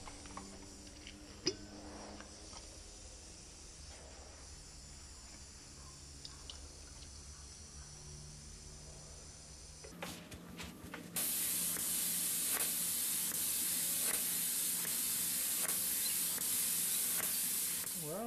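A faint low hum with a few small clicks. A little after a cut, an Iwata LPH 400 paint spray gun starts spraying clear coat with a loud, steady hiss of air and atomised clear that runs for the last seven seconds.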